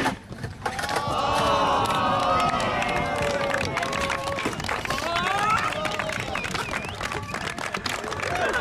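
A sharp skateboard clack as a trick is landed, then a crowd of spectators cheering and shouting, many voices at once.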